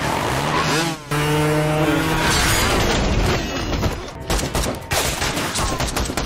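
A motorcycle engine revving, then a rapid exchange of gunshots, several shots in quick, irregular succession through the second half.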